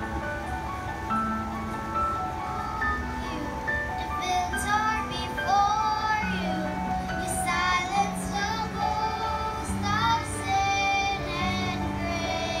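A group of young children singing into microphones over a steady instrumental accompaniment; the voices come in about four seconds in, after a short stretch of accompaniment alone.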